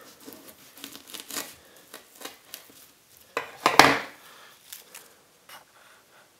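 A knife cutting into a fresh daffodil bulb on a countertop, the layers crackling with a string of small sharp cracks. About three and a half seconds in comes a louder crunch as the bulb is split apart, then only a few faint ticks.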